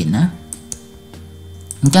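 A few faint, sharp clicks from computer input during a pause in speech, while a browser tab is switched, over a faint steady hum.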